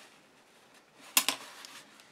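A brief sharp knock followed by a few lighter clicks about a second in: small hard craft items, such as a paintbrush, plastic paint palette or acrylic block, being set down on a craft mat. Otherwise faint room tone.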